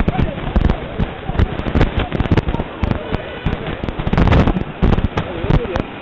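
A police-and-protester scuffle: several men shouting over a dense, irregular run of sharp cracks and knocks.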